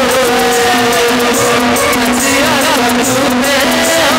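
Sambalpuri devotional kirtan music: a held melodic line with wavering, ornamented bends over a repeating low note and regular cymbal strokes.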